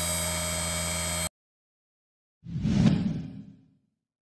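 A steady electrical hum stops abruptly a little over a second in. After a short silence comes a single whoosh sound effect that swells and fades within about a second.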